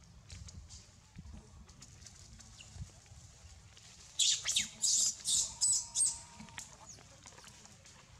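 A baby macaque giving a quick run of about six shrill, high-pitched cries, roughly three a second, starting about four seconds in.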